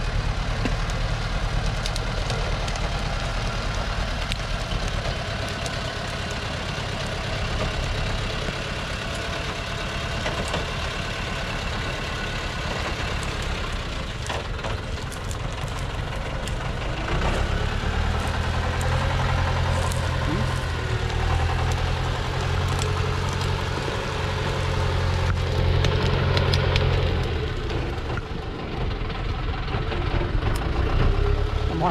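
Diesel engine of a Thaco truck overloaded with acacia logs, running under load as it moves over rough ground. It works harder and grows louder from about halfway through.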